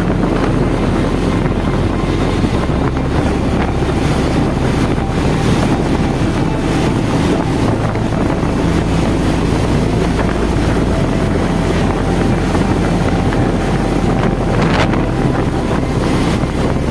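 Wind buffeting the microphone at a steady riding speed, over the running of a Bajaj Pulsar 220's single-cylinder engine.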